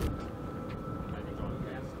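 Faint background voices over a low outdoor rumble, with a thin steady whine throughout.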